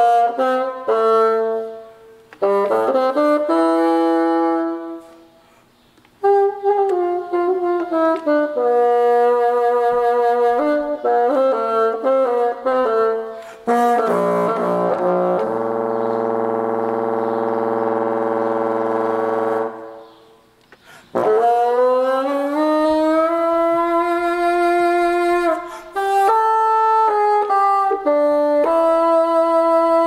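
Solo bassoon playing phrases of single notes, with two brief pauses. About halfway through it holds one long low note, then slides upward in pitch into a new phrase.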